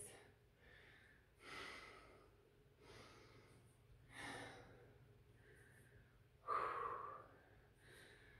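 A woman's quiet breaths while exercising: four separate puffs of breath, the loudest a longer exhale about six and a half seconds in.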